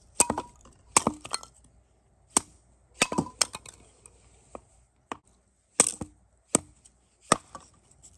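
Hatchet splitting dry boards into kindling on a log chopping block, with a dozen or so sharp, irregular wooden knocks, along with split sticks clattering against one another as they are moved onto the pile.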